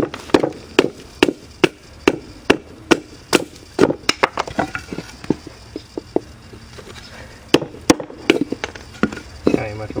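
Sharp wooden knocks from a knife being worked into a strip of dry pallet board to split it into kindling, about two to three knocks a second at first, then sparser, with a few more near the end.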